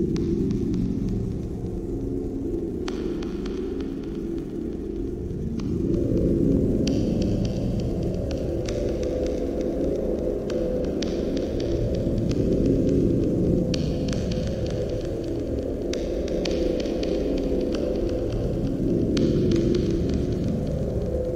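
Low, dark droning hum with a throbbing pulse, growing louder about six seconds in and swelling a couple more times: a horror ambience drone.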